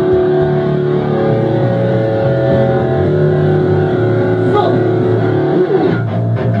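Loud, distorted electric guitar through Marshall amplifiers, holding long ringing chords that change every second or two, with a short pitch slide down near the end.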